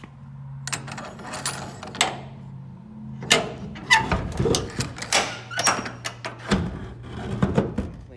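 Barn door being shut and latched by hand: a metal ring-handle latch and a steel bar clank and knock repeatedly against the wood and metal siding, over a steady low hum.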